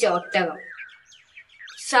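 Faint, short bird chirps in a quiet gap, after a spoken line ends early on and before speech resumes at the close.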